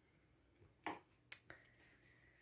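Three short, sharp taps close together about a second in, the middle one the sharpest, against near silence; a faint steady high tone follows the last tap.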